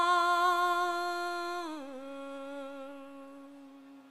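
A single voice holding a long, slightly wavering note of a slow Sanskrit prayer chant, stepping down to a lower held note a little under two seconds in and fading toward the end.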